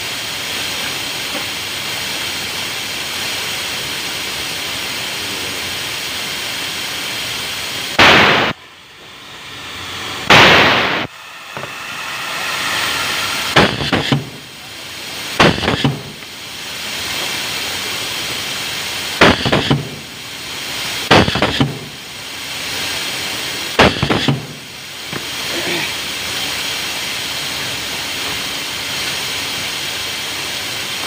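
Pneumatic cable insulation stripping machine cycling: about seven short, loud blasts of compressed air from its cylinder, mostly in pairs a couple of seconds apart, starting about a quarter of the way in, over a steady workshop hum.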